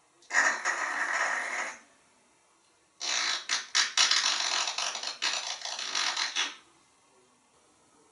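African grey parrot making cracking sounds with its voice, in two bursts: a short crackling rasp, then a longer run of sharp cracks and clicks.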